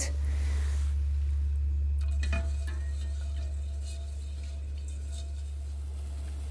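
A pot of vinegar brine heating on a gas burner: a steady low hum, with a faint knock about two seconds in.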